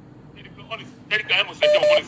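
A caller's voice over a telephone line in a radio studio, with a short steady beep sounding twice in quick succession near the end.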